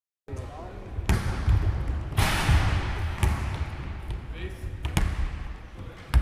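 A few sharp impacts in a sports hall with a hardwood floor: one about a second in, one about three seconds in and a quick double knock near five seconds. There is a loud rushing burst of noise around two seconds in, and faint voices.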